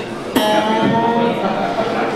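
Electric guitar chord struck hard about a third of a second in, its notes ringing on.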